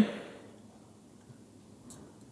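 Quiet room tone with a faint light click near the end as the engine oil dipstick is slid back down its metal guide tube.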